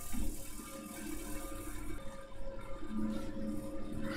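Quiet room noise with a steady electrical hum between spoken phrases. There is a faint low murmur shortly after the start and again near the end.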